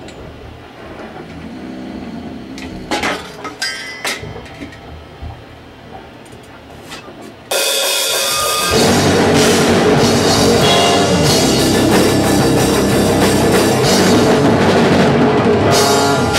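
A few scattered knocks and clicks in a quieter stretch, then about seven and a half seconds in a heavy metal band starts an instrumental song, loud: drum kit with cymbals, bass guitar and electric guitar.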